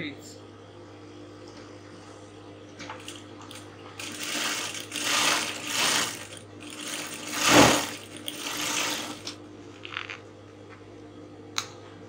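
Electric sewing machine stitching a seam through layered satin and corset stay in several short runs over about five seconds, the machine starting and stopping between them.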